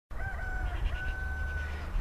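A rooster crowing in the distance: a short opening note, then a long held note lasting nearly a second.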